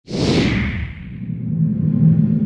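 Intro sound effect: a whoosh that swells in suddenly and sweeps down in pitch over about a second, over a low steady drone that carries on.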